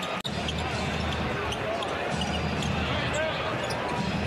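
Arena game sound from an NBA game: a steady crowd hubbub with a basketball bouncing on the hardwood court. The sound cuts out for an instant about a quarter second in, at an edit.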